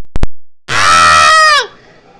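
Two quick pops, then a loud drawn-out vocal sound lasting about a second that drops in pitch at the end.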